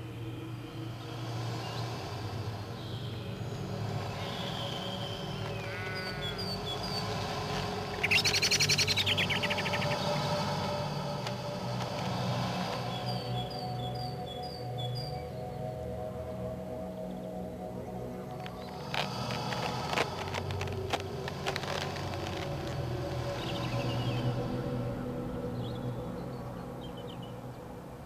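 Soft sustained background music with birdsong over it: short high chirps in quick series, and a louder burst of rapid calls about eight seconds in.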